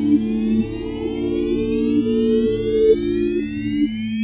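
Synthesized build-up: low sustained synth notes changing in steps under a slow, steadily rising sweep of many tones, like a siren.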